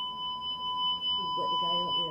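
An electronic beeper sounding one steady, high, slightly buzzy tone for about two seconds, stopping just at the end, with a faint voice under it in the second half.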